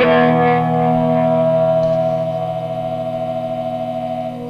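Fretless, single-coil-pickup cigar box guitar: one chord struck and left to ring out, slowly fading.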